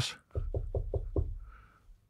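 Knuckles knocking on a door: a quick run of about six or seven raps.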